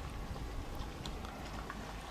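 Quiet, steady background noise with a low rumble and a few faint ticks; no distinct event.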